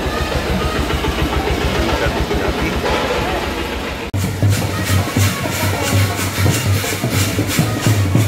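A tractor's diesel engine running close by, with crowd noise and music behind it; about four seconds in the sound cuts suddenly to a brass band playing, with drums and cymbals beating a steady rhythm.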